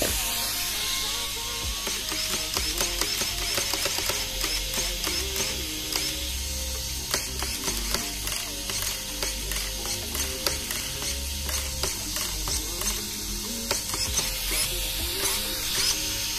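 Digital metal-gear RC steering servo (SPT5410LV) snapping the front wheels from lock to lock, a string of short whirs and clicks, over background music.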